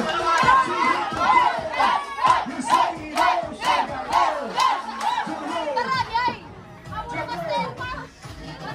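A group of party guests chanting and shouting together in a quick, even rhythm, about two shouts a second, which breaks off a little after six seconds into quieter voices.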